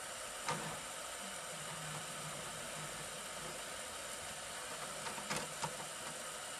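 New Matter MOD-t 3D printer running as it starts printing: its motors drive the print bed back and forth under the hot end in a steady, low mechanical hum, with a few light clicks.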